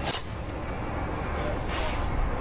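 A single sharp click of a driver striking a golf ball off the tee, right at the start, followed by steady open-air background with a low rumble and a brief hiss near the end.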